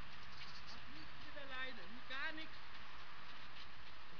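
A person's voice giving a short wordless call, about a second in and lasting about a second and a half, its pitch sliding up and down and wavering near the end, over a steady low hum.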